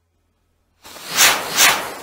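A firework going off: a rushing hiss starts abruptly a little under a second in and swells twice.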